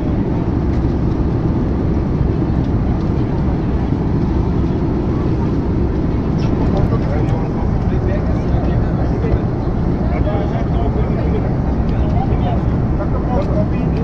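Steady low cabin noise of an airliner in flight, the engines and rushing air heard from inside the passenger cabin. Faint voices of other passengers come through it in the second half.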